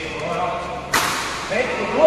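A badminton racket strikes a shuttlecock once, a sharp crack about a second in that rings briefly in the hall. Men's voices call out around it, rising in pitch near the end.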